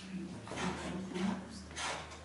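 A two-handled rocking knife (mezzaluna) mincing green olives on a stone board: the blade rocks back and forth in a few quick, rasping chopping strokes, about two a second.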